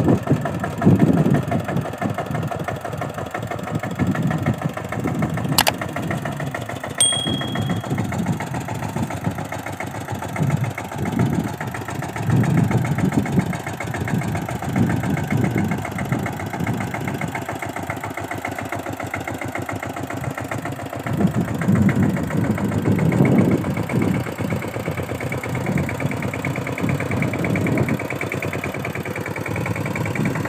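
Kamco power tiller's single-cylinder diesel engine chugging under load as its rotary tiller works the ground, swelling louder every few seconds. A single sharp click sounds about six seconds in.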